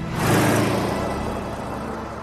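Car engine revving hard as the car accelerates. It is loudest about half a second in, then fades away.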